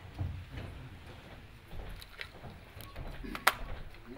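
Low shuffling and chair movement as people get up from a table, with a few small clicks and one sharp knock about three and a half seconds in.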